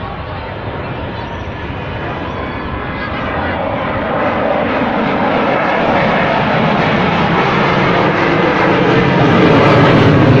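JF-17 Thunder fighter jet's turbofan engine roaring overhead, growing steadily louder as the jet climbs over the crowd.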